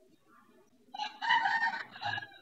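A rooster crowing once, starting about a second in and lasting about a second and a half.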